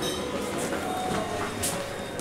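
Adair passenger lift's sliding doors running along their metal sill track, with a short clink about one and a half seconds in.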